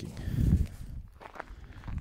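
Footsteps on a snowy gravel road, with a low rush of noise on the microphone during the first half second or so.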